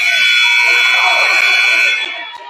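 Gymnasium scoreboard horn sounding one long, steady, loud blast as the game clock hits zero, signalling the end of the third quarter.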